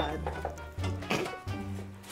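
Background music with a steady low bass line, and a short burst of voice about a second in.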